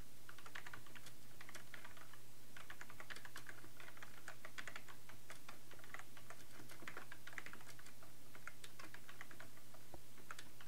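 Typing on a computer keyboard: quick, irregular runs of key clicks with brief pauses between words.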